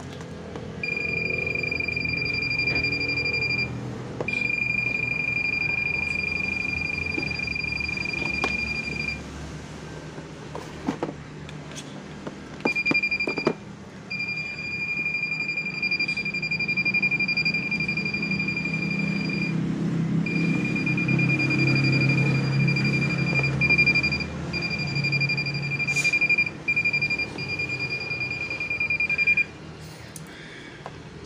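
A handheld electrical tester's steady high beep, sounding in long stretches that cut out briefly several times, with a longer gap about nine seconds in, as it is worked along a laptop adapter's cable. Where the beep drops out marks the spot where the wire inside the cable is broken. Low handling noise and a few clicks sit under it.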